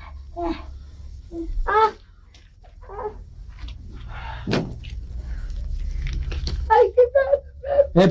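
Brief voice sounds, short exclamations and mutterings, over a steady low hum; the voices grow denser near the end.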